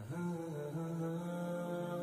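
Soft background music: a wordless, humming chant held on a steady low pitch, with slight note changes now and then.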